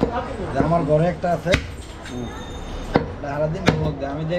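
Large butcher's knife chopping goat meat and bone on a wooden chopping block: several sharp chops, the loudest about a second and a half in.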